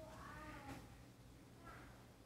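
Near silence: room tone, with a faint, high, wavering call in the first second and a brief shorter one near the end.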